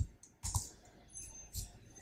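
A few faint computer keyboard keystrokes, separate clicks about half a second apart.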